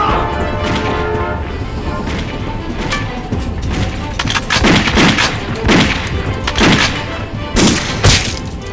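A man's anguished shout near the start, then four pistol shots about a second apart, each a sharp crack with a low boom, over a dramatic film score.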